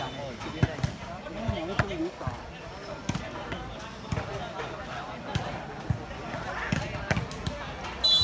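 A volleyball bouncing on and being slapped against a hard concrete court. It makes about eight sharp, irregular smacks, under the chatter of players and spectators.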